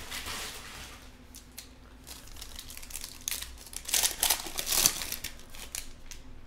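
Foil wrapper of a trading-card pack crinkling as it is torn open and the cards are pulled out, in uneven rustling bursts that are loudest about four seconds in.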